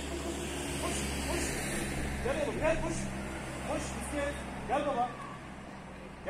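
Low, steady engine rumble of a vehicle on the street, fading out about five seconds in, with short rising-and-falling voice calls every second or so.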